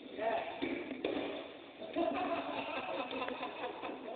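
Indistinct talking from several people nearby, with a single sharp knock about a second in.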